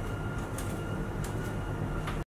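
Steady room noise: a low hum with a thin high whine running through it, and a few faint taps, as of footsteps walking away.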